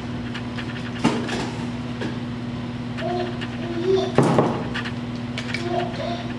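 Short metallic clicks and a rattle from a Heritage Rough Rider single-action revolver as its cylinder is taken out, twice: about a second in and again about four seconds in. A steady low hum runs underneath.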